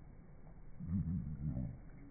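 Australian magpie call slowed down with the slow-motion footage, pitched far down into one deep call about a second long near the middle, its pitch wavering up and down.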